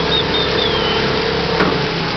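New 18 hp two-stroke outboard motor running steadily on a small boat, a constant noise with a faint steady hum that drops out near the end.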